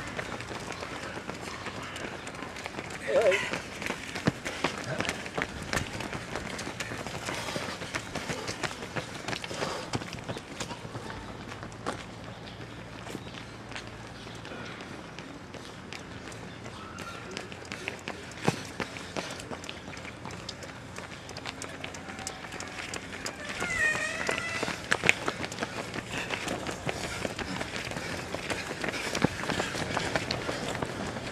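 Footsteps of many runners in running shoes on a paved path, a continuous patter of footfalls as a stream of runners passes, with voices in the background.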